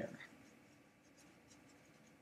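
Faint scratching of a felt-tip marker writing on paper.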